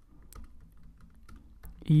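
Typing on a computer keyboard: a loose run of faint, quick keystrokes.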